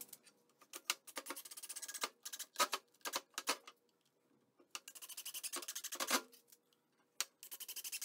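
Porter-Cable cordless drill driving screws into a wooden frame in sped-up footage, heard as several bursts of fast, even clicking with short pauses between.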